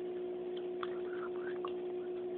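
Steady hum of aquarium equipment, one held tone with fainter overtones, with a few faint short ticks and chirps over it.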